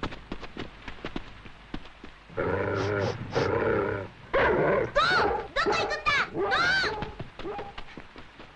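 Cartoon dog vocalizing: after a stretch of soft clicks and rustling, a series of short voiced calls, the later ones quick yelps that rise and fall in pitch.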